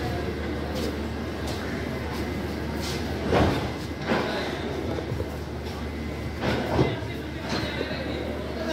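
A train of LHB passenger coaches rolling slowly past along a platform. The wheels give a steady rumble with two louder knocks, about three and a half and about seven seconds in. People's voices are heard along with it.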